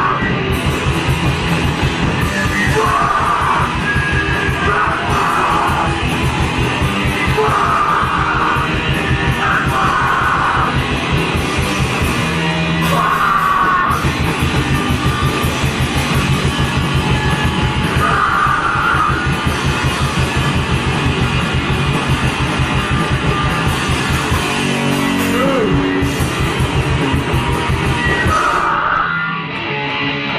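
Heavy rock band playing loud and live: fast, even drumming and guitar under a vocalist yelling in short, repeated bursts. The full band drops out about a second before the end.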